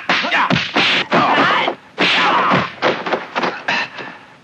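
Dubbed kung fu fight sound effects: a fast run of sharp whacks and thuds from punches and blocks, about three or four a second, with a short pause partway through.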